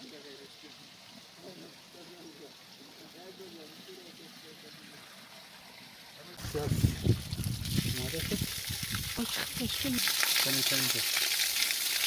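Faint voices at first. About six seconds in, a loud rushing of water begins and settles into a steady hiss of water pouring over rocks from about ten seconds.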